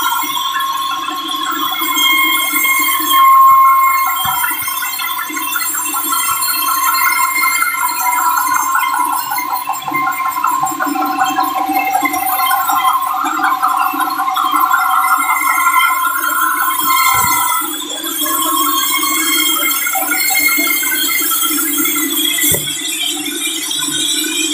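Sawmill band saw cutting through a large log: a loud, steady whine whose pitch shifts now and then as the blade works through the wood, with a couple of brief knocks near the end.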